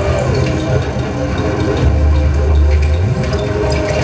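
Live electronic music played on tabletop electronic instruments: layered droning tones that slide slowly in pitch. A deep bass tone swells in about halfway through and then glides upward.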